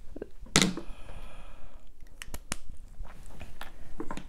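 Light handling noises of a plastic makeup palette compact: a short soft sound about half a second in, then a few sharp clicks spread through the rest.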